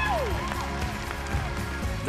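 A sustained music bed with a studio audience cheering and whooping, a falling whoop just after the start, and scattered applause.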